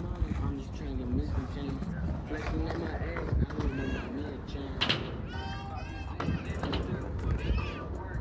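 Indistinct voices of several people talking and calling out, with a few high, wavering calls in the middle and a sharp knock about five seconds in, over a steady low rumble.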